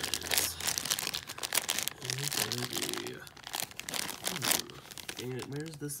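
Plastic blind bag crinkling and crackling irregularly as hands pull and twist it, trying to tear it open.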